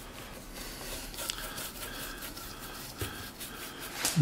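Faint, irregular swishing strokes of a small disposable brush spreading wet glaze over a painted wooden cabinet door.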